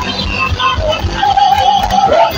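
Live Nigerian gospel praise music: a woman sings into a microphone over a band with a pulsing bass beat, holding one long note through the second half.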